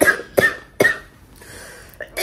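A woman coughing three times in quick succession, about half a second apart.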